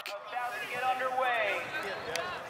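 Distant voices of players and spectators calling out across an open field. No single voice stands out.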